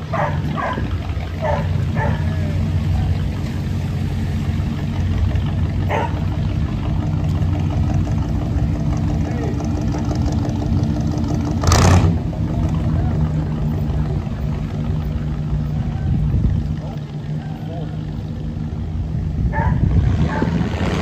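Customized 1941 Ford's V8 engine running with a steady low rumble as the car idles and pulls away slowly. A brief loud burst comes about twelve seconds in.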